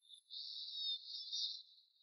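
Insects trilling: a high-pitched trill that swells twice, fading near the end.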